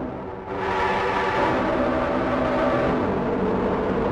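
A sustained sampled pad note from a Kontakt virtual instrument, played through its drive distortion. The sound fills out and brightens about half a second in, holds steady, then stops suddenly near the end.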